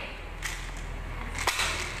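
Product packaging handled as a box and plastic bottles are picked up: a rustle, then a sharp tap about a second and a half in.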